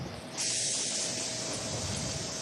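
A steady hiss that starts suddenly about half a second in and holds evenly.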